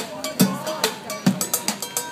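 Street drummer beating sticks on an improvised kit of plastic buckets, metal pots, pans and cans: a fast, steady beat of bright metallic clanks over low thuds that come a bit more than twice a second.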